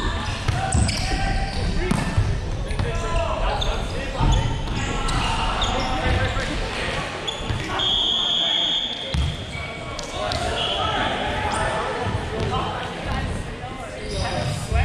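Indoor volleyball rally in a large echoing hall: the ball struck several times, players calling out, and about eight seconds in a steady shrill whistle lasting about a second as the rally ends.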